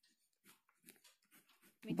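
Faint, scratchy strokes of a marker pen writing on paper, a few short strokes with small gaps between them. A woman's voice starts just before the end.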